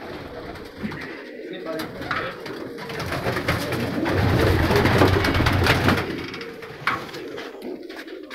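Domestic pigeons cooing in a small loft, with a loud flurry of wing flapping in the middle as the birds scatter while one is caught by hand.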